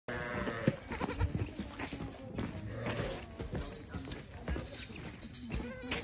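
Goat kid bleating near the start, with more short calls around the middle, over scattered knocks and scuffs of steps on dry, gravelly dirt.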